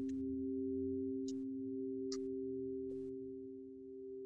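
Background music: a steady drone of two sustained pure tones, slowly swelling and fading. A few faint, short rustles come about a second, two seconds and three seconds in.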